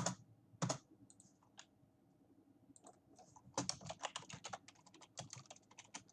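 Typing on a computer keyboard: a couple of separate key presses in the first second, then a quick run of keystrokes from about three and a half seconds in until shortly before the end.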